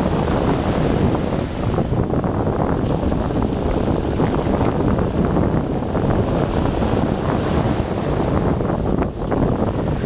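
Wind buffeting the microphone in a steady, dense low rumble, with sea waves washing underneath.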